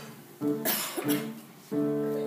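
A child's violin solo: a few slow notes, each starting sharply and fading away. About half a second in, a cough from the audience sounds over the music.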